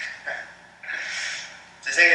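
A man's breathy laughter: a couple of short puffs of breath, then a longer airy exhale about a second in.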